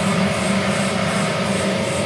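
Steady machinery hum with an even background hiss, with no distinct clicks or changes.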